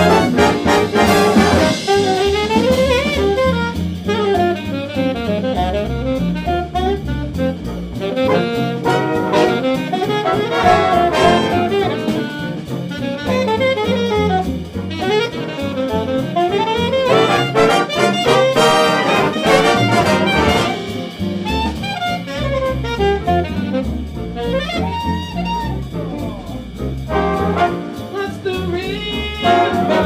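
Jazz big band playing an instrumental passage: a saxophone solo line winding up and down over the brass section and rhythm section.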